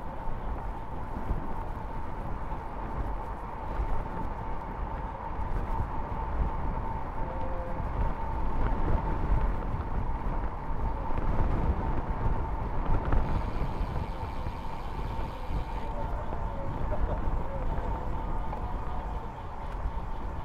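Wind buffeting the microphone over steady tyre and road rumble as a road bike rolls along at speed, with a faint steady high tone throughout.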